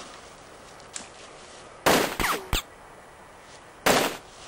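Gunshot-like bangs: a cluster of sharp bangs about two seconds in, with a steeply falling cry among them, and another bang near the end.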